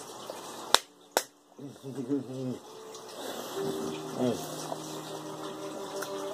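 Two sharp finger snaps about half a second apart, then a man humming in short phrases.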